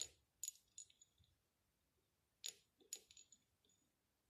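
A small metal pendulum bob knocks against a rock being tested as a possible meteorite, giving sharp metallic clicks with a brief bright ring. There are two quick groups of three clicks, one at the start and one a little over two seconds later.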